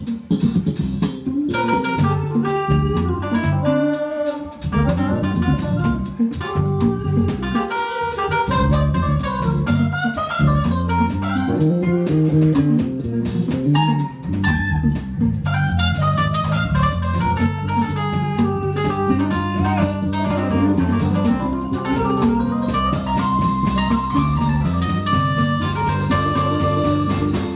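Live band playing an R&B jam: drum kit, electric bass and keyboard, with a melodic lead line running over the groove.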